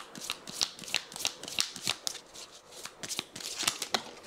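A deck of pink Love Me oracle cards being shuffled and handled by hand: a quick, irregular run of crisp card flicks and slaps, several a second.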